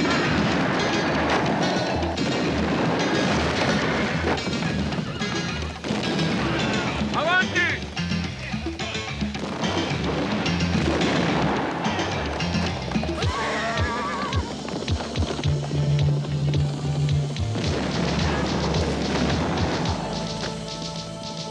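Film soundtrack of a horseback chase: action music mixed with galloping horses, explosions and shouting men. Sliding cries like a horse neighing or a man yelling come about seven seconds in and again near fourteen seconds. Quick knocks of hoofbeats or blasts fill the last few seconds.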